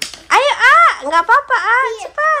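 A young child's high voice calling out loudly in a sing-song run of quick rising-and-falling syllables.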